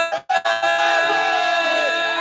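Gospel song sung by a choir and a lead singer on microphone with keyboard accompaniment. A brief break just after the start, then a long held note.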